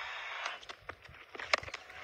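Cricket ground sound: a steady crowd-and-field hiss that drops away about half a second in. A few soft knocks follow, then one sharp crack about one and a half seconds in, a bat striking the ball.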